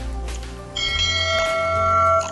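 A bell-chime sound effect for a subscribe button's notification bell: it strikes sharply about three-quarters of a second in and rings on, with a short click in the middle, over soft background music.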